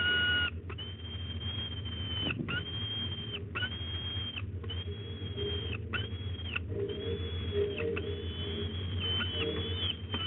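Peregrine falcon nestling begging from the adult male, giving a run of about seven drawn-out, high, steady wailing calls, each lasting about a second with only a short break between them, over a steady low hum.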